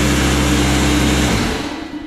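Craftsman 15-gallon, 150 PSI portable air compressor's motor and pump running loudly, then switched off about one and a half seconds in and winding down.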